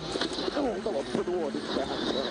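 Indistinct voices, fainter than the commentary, over a steady low hum.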